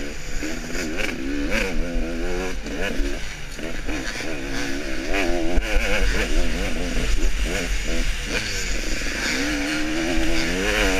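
KTM off-road motorcycle engine under race throttle, its pitch rising and falling over and over as the rider opens and shuts the throttle along the trail, picked up by a helmet-mounted camera with wind hiss.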